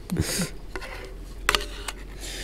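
A spatula scraping creamed corn out of a skillet. There is a soft scraping hiss at the start and a single sharp click about a second and a half in.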